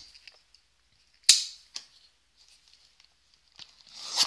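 A sharp snap about a second in, then a fainter click and a few small ticks, as a cardboard hockey card hobby box is opened.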